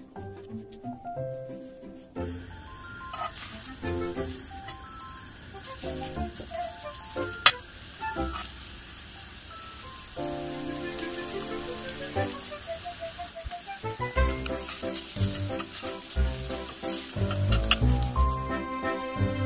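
Small enoki mushroom pancakes sizzling as they fry in oil in a pan, starting about two seconds in, over light background music. One sharp click partway through.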